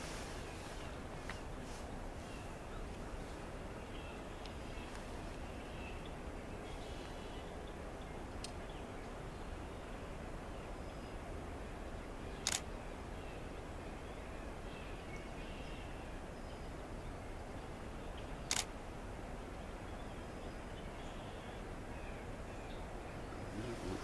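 Steady outdoor background noise with faint, scattered distant bird calls, broken by two sharp clicks about six seconds apart near the middle.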